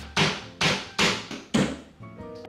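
Hammer driving a nail into a wall to hang a picture: four sharp blows, about two a second.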